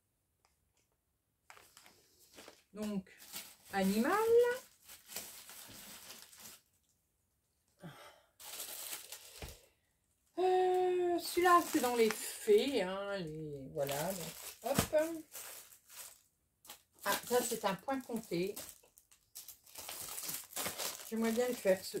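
Plastic bags around cross-stitch kits crinkling and rustling in short bursts as they are picked up, handled and dropped into a plastic storage box, between stretches of a woman's voice.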